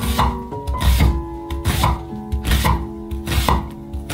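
Knife chopping an onion on a wooden cutting board, cut after cut, over background music with a steady beat.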